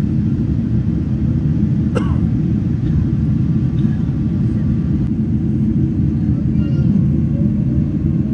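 Steady, loud low rumble of an airliner in flight, heard from inside the passenger cabin, with one brief click about two seconds in.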